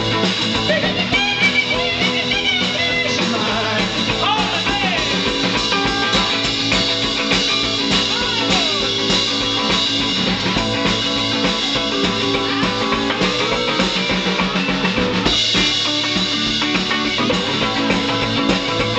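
Live rock and roll instrumental break: a hollow-body electric guitar plays a lead with string bends over a drum kit keeping a steady beat.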